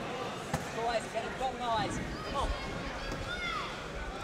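Shouted voices of people around the mat, unclear and off-microphone, rising and falling in short calls. There is a sharp knock about half a second in and a few dull thumps.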